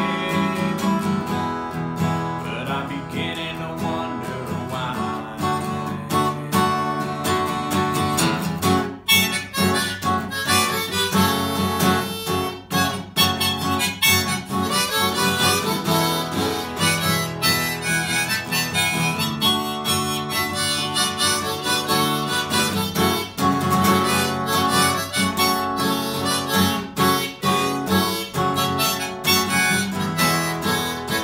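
Harmonica solo played over a strummed Guild acoustic guitar, with the harmonica held in a neck rack. The strumming grows stronger about nine seconds in.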